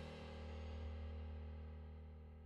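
A single deep musical chord or note, struck about a second earlier, ringing out and fading slowly and steadily.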